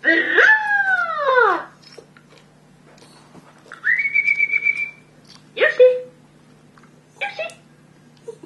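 Border terrier howling: one long call that rises and then falls in pitch, then two short calls later on. About halfway through, a whistled note rises and is held for about a second.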